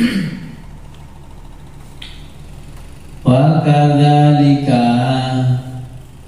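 A man's voice intoning Arabic text in a chanted, melodic recitation: a phrase dies away at the start, then after a lull of about three seconds one long held phrase begins and fades out near the end.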